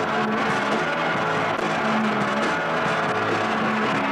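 Live rock band playing loudly: electric guitar and bass hold low droning notes under a dense, noisy wash of drums and cymbals.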